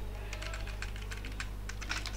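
Faint typing on a computer keyboard: irregular keystrokes as code is entered.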